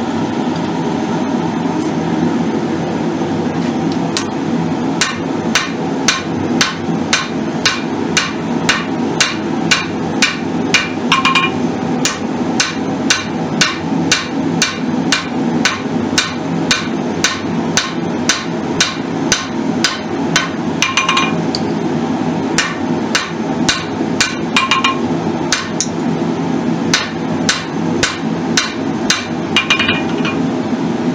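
Hand hammer striking a red-hot steel tomahawk blade on an anvil, drawing it out to a taper with the hammer face. Sharp, ringing blows about two a second begin a few seconds in and run on with a few short pauses, over a steady low hum.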